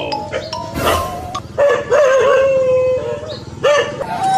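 A dog's drawn-out, wavering howl-like cries, heard twice, over background music.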